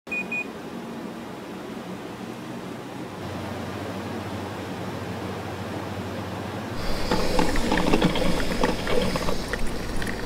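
Two short high beeps at the start over a low steady hum; about seven seconds in, a small drip coffee maker starts gurgling and sputtering irregularly as it brews.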